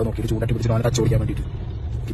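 A man speaking inside a car over the steady low hum of the car's cabin.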